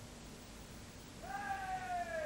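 Quiet for about a second, then a single held note with overtones comes in and slides slowly down in pitch.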